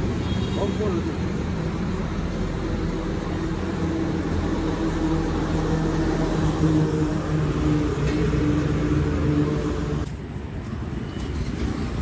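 Street traffic: a steady engine hum from vehicles on the road, including a passing truck, strongest past the middle and dropping away sharply about ten seconds in.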